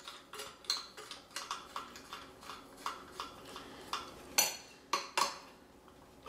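Nickel-plated metal horn tubes of a 1908 Testophone clinking and tapping against each other as they are handled. There is a string of small clicks, and two louder metal knocks come near the end.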